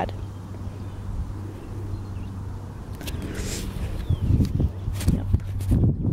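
Camera handling noise: low rumbling bumps and a few sharp clicks as the camera is moved and turned, over a steady low hum.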